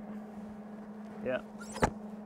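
A single sharp metallic click near the end as a cut piece of steel logging cable is pushed into place on the sculpture, over a steady low hum.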